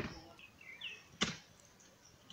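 Two sharp knocks about a second and a quarter apart, the first the louder, with a few faint bird chirps between them.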